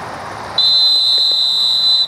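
Referee's whistle blown in one long, steady, high blast lasting about a second and a half, starting about half a second in, signalling the play dead after the tackle.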